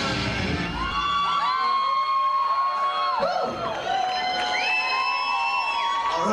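Live rock music from a band with drums ends about a second in. A crowd then cheers, yells and whoops.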